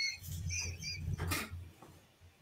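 Quiet, muffled laughter: faint squeaky high notes over a low chuckle, with a short click about a second in.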